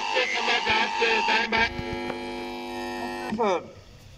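A man's voice over a public-address loudspeaker: a few words, then one long drawn-out vowel held at a steady pitch for about a second and a half, trailing off near the end.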